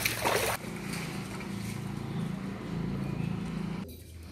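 A steady low motor hum, after a brief noisy rush at the start, cut off abruptly just before the end.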